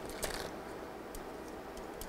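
A clear plastic parts bag rustles briefly at the start, then a few faint light ticks follow as the small circuit-board pieces are handled.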